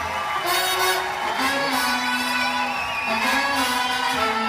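Live band music with long held notes, played back from a screen and picked up by a phone's microphone.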